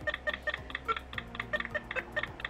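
Sound from the Dancing Demon program on an early home computer: a fast, even run of clicks, about seven or eight a second, with faint tones under them.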